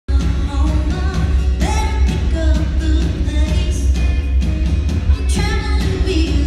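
Live country-pop band playing with a lead singer, heard from the audience in a large hall, with a heavy, boomy bass and a steady drum beat.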